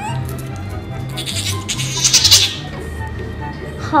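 Background music with a steady bass line, over which a small fluffy puppy being combed gives a rough, snappish vocalization lasting about a second, from about a second in; it sounds fierce.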